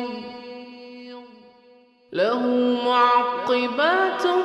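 Chanted Quran recitation by a solo reciter. A held final note of one verse fades away over the first two seconds. Then, about two seconds in, the reciter begins the next verse, the voice sliding up into an ornamented melodic line.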